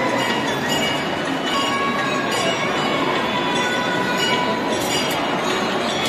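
Continuous loud din in a crowded temple hall: many metal bells ringing in overlapping clear tones at different pitches over the noise of the crowd.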